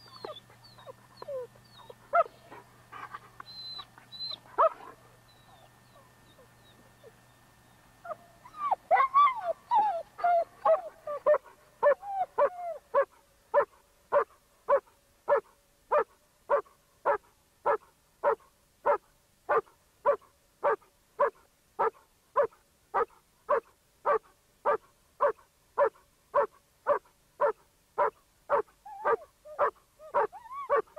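A dog barking in a long, even run of about two barks a second. It starts about eight seconds in with a flurry of higher whining yelps. A few faint bird chirps come before it.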